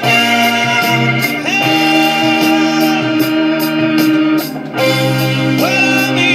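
1970s German jazz-rock recording playing: a band with held chords and melody notes over a steady cymbal beat, with a brief drop about four and a half seconds in.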